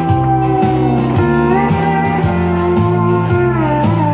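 Live pedal steel guitar playing a slow country melody, gliding up into a note about a second and a half in and bending down near the end. Behind it are a strummed acoustic guitar, a stepping bass line and a steady beat.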